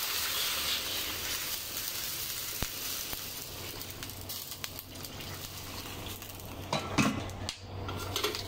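Water poured into a hot wok of fried fish head and vegetables, sizzling and fading as the liquid cools the oil. A few clinks of a metal spatula against the wok about seven seconds in.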